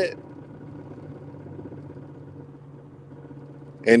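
A steady low background hum through a pause in speech, with a spoken word trailing off at the start and another beginning at the very end.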